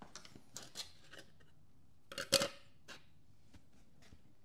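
A 3D-printed plastic press die being handled on a steel fixture table. A few light clicks and scrapes come first, then a louder clattering knock just over two seconds in as the die is set down and opened with the pressed steel sheet inside.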